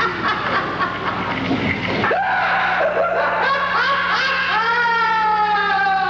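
Shrieks and laughter-like vocal cries from performers during a live band set, over a steady low hum. Near the end comes a long held high note that slides slightly down.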